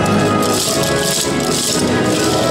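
Wooden naruko clappers rattled in unison by a troupe of yosakoi dancers, two bursts of clatter about a second apart, over loud dance music.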